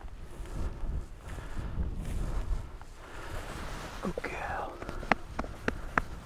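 Wind rumbling on the microphone and footsteps pushing through heather, with a short rustling burst about four seconds in and a few sharp clicks in the last second.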